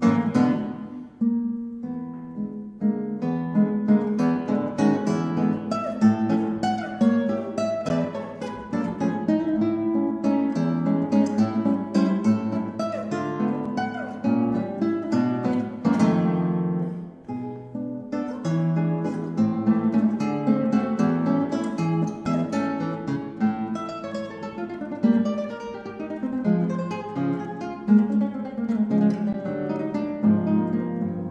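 Classical guitar played in a fast, busy passage of plucked notes, with a sharp strummed chord at the start and another about halfway through.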